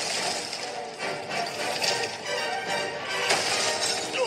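Animated film soundtrack playing through a tablet's speaker: music mixed with crashing sound effects.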